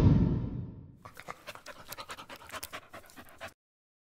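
A dog panting in quick, short breaths for about two and a half seconds, stopping abruptly. Before it, music fades out during the first second.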